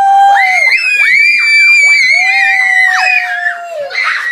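Two young girls screaming with excitement: long, high-pitched shrieks held and overlapping, with a second voice squealing higher, and a fresh burst of shrieking near the end.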